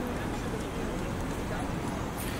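Outdoor ambience of a busy park lawn: a steady background noise with faint, distant voices.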